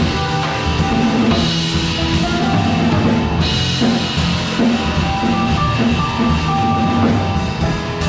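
Live jazz trio playing: drum kit with ride and crash cymbals, and a plucked upright double bass. Cymbal swells come about a second in and again a little after three seconds.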